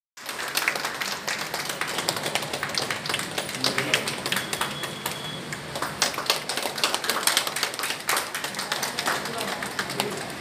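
Scattered hand clapping from a small audience, many irregular claps throughout, over background voices.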